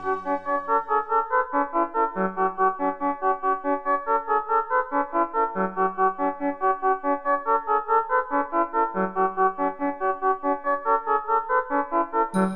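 Trance breakdown: a synthesizer plays a fast, repeating piano-like arpeggio with no drums, over a low note that changes about every three and a half seconds.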